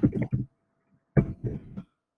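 A man's short cough about a second in, right after the tail of his speech.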